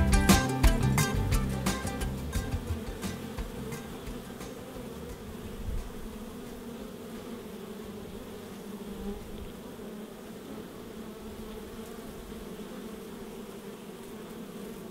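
Honey bees crowding a hive entrance, buzzing in a steady hum, while guitar music fades out over the first few seconds.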